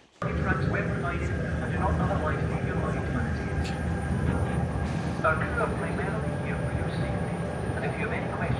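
Steady low rumble of a car ferry's engines running at the slipway, with people talking around and a laugh late on.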